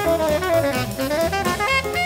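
Uptempo small-group jazz: a saxophone plays a fast running line over walking double bass and drum kit.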